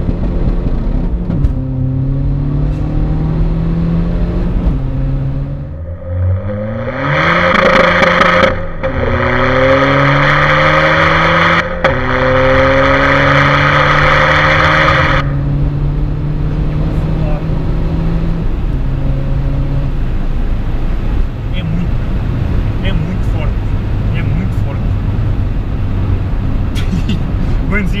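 Tuned SEAT Ibiza TDI turbodiesel accelerating hard through the gears, its engine pitch climbing in steps with a brief drop at a gear change. About a third of the way in, a loud rushing of exhaust and wind takes over for several seconds and cuts off suddenly, leaving the engine running steadily and then easing off.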